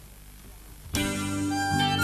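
A live band starts a song's intro suddenly about a second in, with guitar and bass notes and a wooden flute coming in with a held note near the end.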